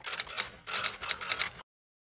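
Typewriter keystroke sound effect: a quick run of key clicks in several clusters, cutting off suddenly about one and a half seconds in.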